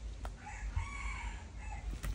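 A rooster crowing once, faintly: a single pitched call that rises and falls in several linked parts and lasts about a second and a half.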